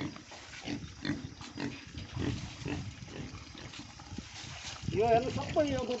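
Young pigs grunting in short, irregular grunts, two or three a second.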